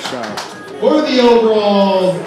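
A voice holding one long, wordless drawn-out note from about a second in, sliding slowly down in pitch, after a few sharp clicks at the start.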